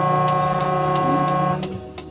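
A vehicle horn sounds in one long steady blast that cuts off about one and a half seconds in, over background music.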